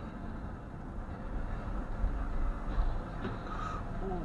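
Steady low road and engine rumble of a car driving, heard from inside the cabin through a dashcam microphone.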